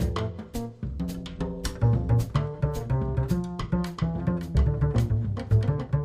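Jazz trio music in which a pizzicato double bass is to the fore, playing a line of plucked notes, with the drum kit keeping time in quick, sharp, evenly spaced strokes.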